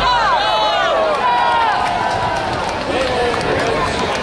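Crowd of many voices at once, chattering and calling out, with several loud calls in the first second and one voice held for about a second after that.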